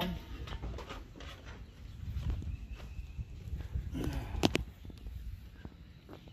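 Weber kettle grill being opened and worked: the metal lid lifted off and handled, with small knocks and a couple of sharp metal clanks about four and a half seconds in, over a low rumble.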